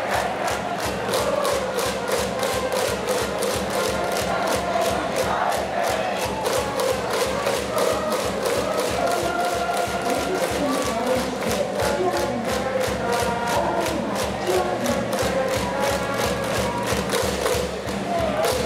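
High school baseball cheering section chanting in unison over a steady drumbeat of about four beats a second, with band music.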